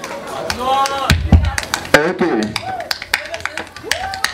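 A beat being tapped out by hand, with sharp clicks and a deep thump about a second in, over voices.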